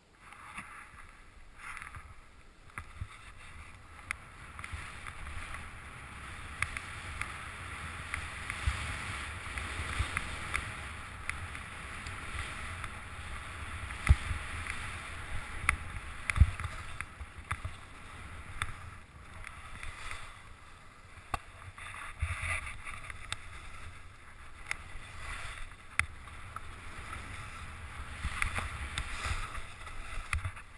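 Skis running through deep fresh powder snow, a continuous swishing hiss that starts as the skier pushes off, with wind rumbling on the camera microphone and a few sharp knocks along the way.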